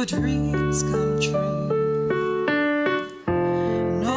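Korg digital keyboard playing an electric-piano accompaniment with no voice over it: held chords changing every half second or so, with a brief drop in level about three seconds in before the next chord.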